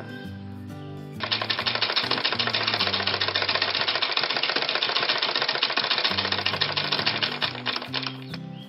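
Domestic sewing machine running and stitching fabric, a rapid, even clatter of stitches that starts about a second in and stops near the end. Background music with low, steady notes plays throughout.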